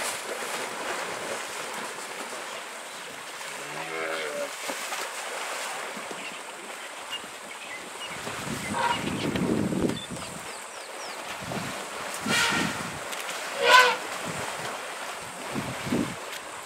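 African elephants wading and splashing in a muddy waterhole, the water sloshing steadily, with two sharp splashes late on, the second the loudest. A brief pitched call sounds about four seconds in.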